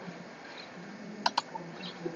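Two quick clicks of a computer mouse about a second in, close together, over faint background hiss.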